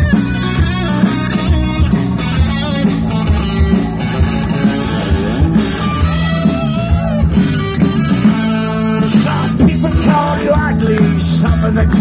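Live rock band playing an instrumental passage led by electric guitar, over a steady drum beat.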